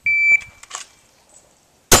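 Shot timer start beep: one steady high-pitched tone about a third of a second long. Near the end comes a single loud handgun shot.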